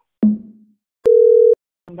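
A single steady telephone tone, one held pitch lasting about half a second a little after the middle, starting and stopping abruptly with a click at each end. A short sudden sound comes just before it, near the start.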